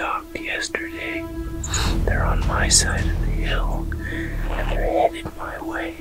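A man whispering in short phrases over soft background music with a steady held tone.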